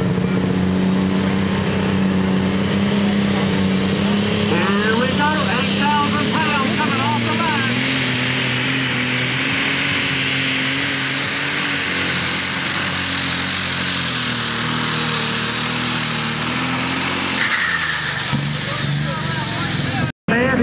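Case IH 8950 super stock pulling tractor's multi-turbocharged diesel engine at full throttle under load during a pull, with a high turbo whine that rises about six seconds in and holds. Near the end the engine drops back as the run ends.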